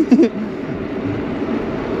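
Steady road and traffic noise heard while riding a bicycle along a busy city road, with a brief bit of voice at the very start.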